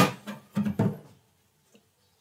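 A single sharp click, then a few short, low, pitched vocal sounds from a man, fading out about a second in.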